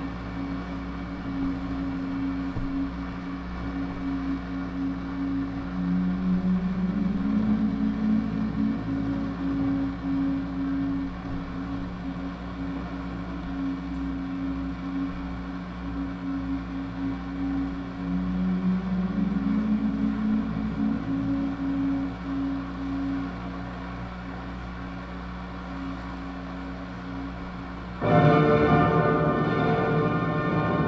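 Live electronic drone music: low sustained tones hold steady, one of them sliding upward in pitch about 6 seconds in and again about 18 seconds in. Near the end a louder, brighter cluster of tones cuts in abruptly.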